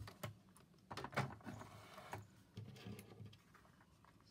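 Scattered light clicks and rustles of a stitched paper-and-fabric card being handled and drawn away from a sewing machine, its threads pulled out after it.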